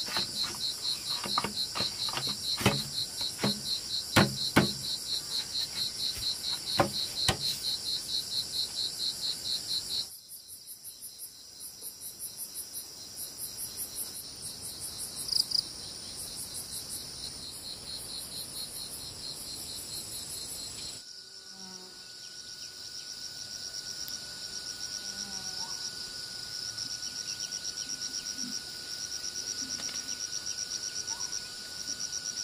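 Forest insects chirping in fast, even pulses, the chorus changing to other insect calls twice as the scene cuts. Over the first several seconds come sharp knocks from bamboo rails being worked into a fence, and near the end a steady high insect tone joins in.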